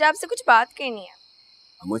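Crickets chirping in a steady high-pitched trill, with a person's voice over it during the first second.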